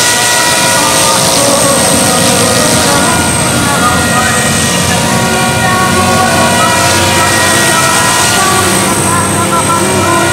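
A 450-size electric RC helicopter with a scale MD500 body flying low: a steady, high-pitched whine from its motor and gears over the whir of the rotors, at an even level throughout.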